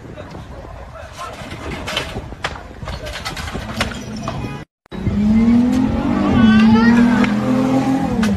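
Wooden boards striking a shop front in a run of sharp knocks and clatters. After a brief dropout, a car close by makes a loud, sustained droning tone that rises briefly in pitch and then settles.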